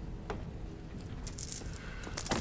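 Small metal pieces jangling and clinking in a short burst about a second and a half in, after a soft knock near the start.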